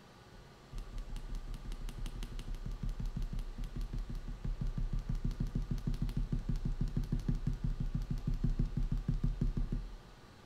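A pencil rubbed rapidly back and forth on drawing paper, about six strokes a second, starting under a second in and growing louder over the first few seconds before stopping abruptly.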